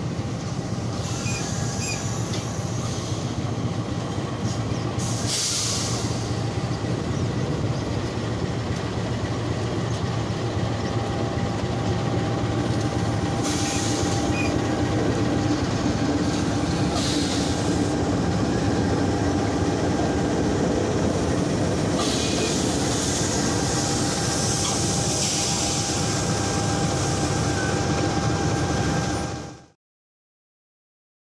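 Passenger train at a station platform: coaches rolling slowly and a KAI CC206 diesel-electric locomotive running, a steady rumble with several brief high-pitched bursts. The sound cuts off suddenly near the end.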